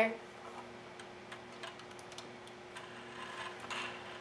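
Faint, irregular small clicks of plastic Lego parts as a built Lego model plane is handled and turned over, with a steady low hum underneath.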